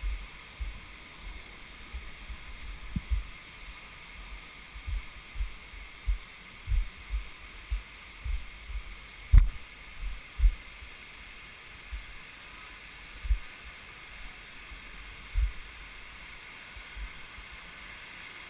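Steady hiss of a rushing mountain stream, overlaid by irregular low thuds from a body-worn action camera jostling as its wearer clambers down rock, with one sharp knock about halfway through.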